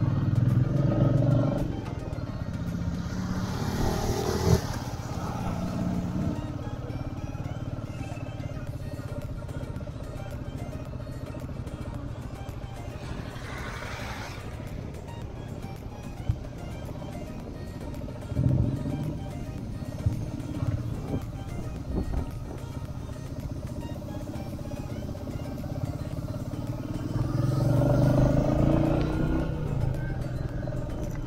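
Motorcycle engine running at low speed while the bike rides over a rough gravel road, louder near the start and again near the end, with a few short knocks. Background music plays underneath.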